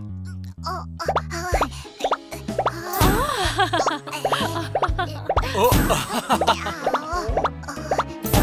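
Playful cartoon background music with a bass line stepping from note to note, overlaid with many short popping and plopping sound effects that slide in pitch; a louder, sharp pop comes about three seconds in.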